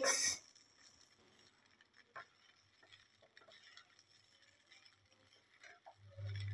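Near silence with a few faint soft taps and scrapes from a spatula stirring poha (flattened rice) in a nonstick kadai. The clearest tap comes about two seconds in.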